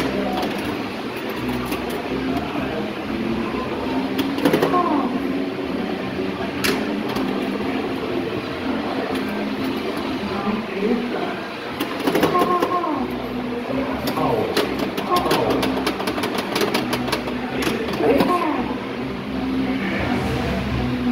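Voices talking over bursts of sharp clicks and knocks from a Williams FunHouse pinball machine. The clicks come in a short cluster about four seconds in and a dense run in the second half.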